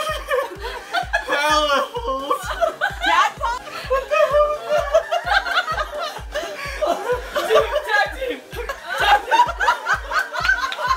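Several people laughing hard, their laughs and garbled voices distorted by lip-stretching game mouthpieces, over background music with a steady beat of about three low thumps a second.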